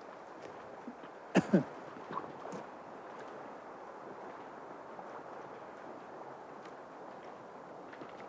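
Steady rush of a shallow river flowing along a gravel bank, with one short vocal grunt about a second and a half in.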